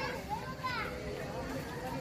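Faint voices of children and adults talking and calling in the background.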